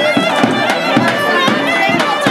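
Live wedding band music: a clarinet playing a fast, ornamented folk melody over a steady drum beat of about three to four strokes a second.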